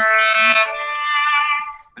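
Cello played with the bow in long sustained notes, moving to a new note about halfway through, then fading out just before the end.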